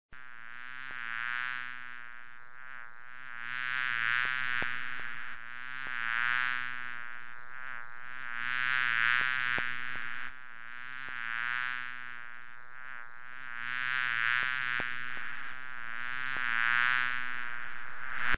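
A fly buzzing in flight: a continuous low-pitched drone that swells louder and fades again every two to three seconds, as if it passes close and then moves away.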